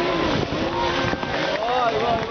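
Dirt-track racing motorcycle engines revving, their pitch rising and falling, with spectators' voices mixed in.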